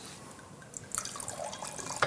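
Faint wet dripping and squelching of sauced spaghetti being lifted from a frying pan with metal tongs.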